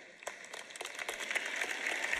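Audience applause, starting as scattered claps about a quarter second in and building into steady clapping from a large crowd.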